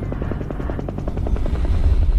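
A helicopter flying past, its rotor blades beating in a rapid, even rhythm over a low rumble, getting a little louder toward the end.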